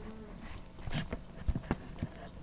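A few light knocks and taps as paper sheets on a makeshift homemade teleprompter are scrolled up by hand, the loudest a dull thump about one and a half seconds in.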